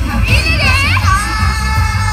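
Female idol group singing into microphones over a loud J-pop backing track with a heavy bass beat. A high vocal phrase slides up and down, then a long held note begins about a second in.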